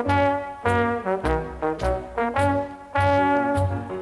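An anthem played on brass instruments: a phrase of short, separated chords with trumpets above and a deep bass line below.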